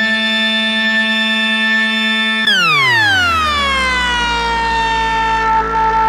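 Waldorf Blofeld synthesizer patch built from two wavetables with no filter, holding a steady, bright, buzzy tone. About two and a half seconds in it slides smoothly down about an octave and settles into a new held tone.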